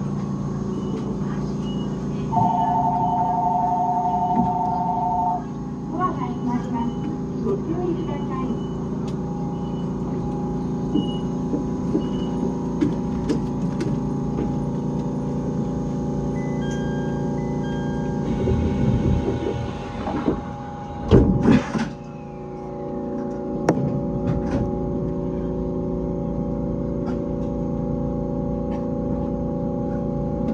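Inside the cab of an E127 series electric train standing at a station: a steady electrical hum from the onboard equipment, a two-tone electronic beep for about three seconds early on, and scattered clicks. Two loud thuds come about 21 seconds in, and after them the steady hum changes as the train starts to move off.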